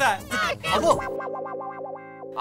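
A short music sting from a TV sitcom's background score: after a brief voice in the first second, a held, distorted chord rings steadily for about a second.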